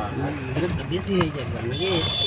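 Voices talking inside a moving car's cabin over the steady low hum of the engine and road. A thin, high, steady tone starts near the end.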